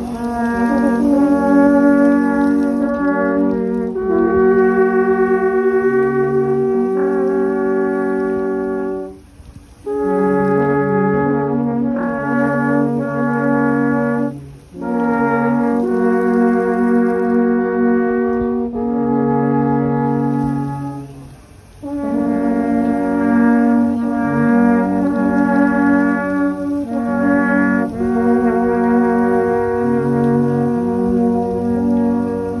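Alphorn ensemble playing slow music in several parts, long held notes sounding together as chords. The phrases break off briefly about nine, fourteen and twenty-one seconds in.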